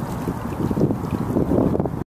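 Wind buffeting the microphone: a loud, uneven low noise with no let-up.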